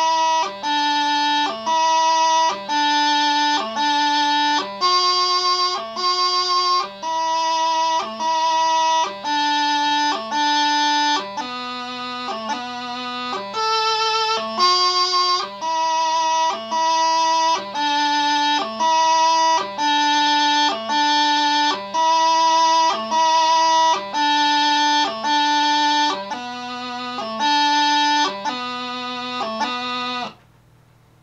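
Highland bagpipe practice chanter playing a slow piobaireachd melody: held reedy notes of about a second each, broken up by quick grace-note flourishes between them.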